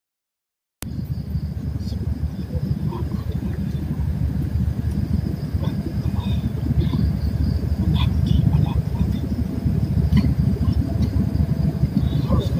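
A loud, unsteady low rumble starts abruptly about a second in, with faint distant voices and small scattered clicks over it.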